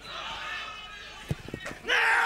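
Football players shouting on the pitch, with a sharp thud of a ball being kicked about a second and a half in. A louder yell starts near the end.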